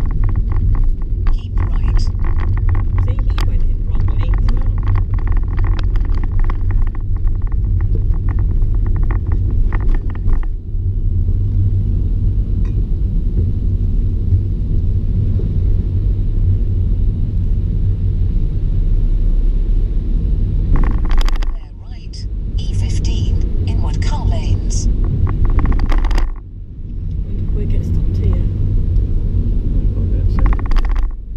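Steady low rumble of engine and tyre noise inside a car cabin, driving slowly over a wet road. Indistinct voices sound over it for the first third and briefly again later, and the rumble dips twice in the second half.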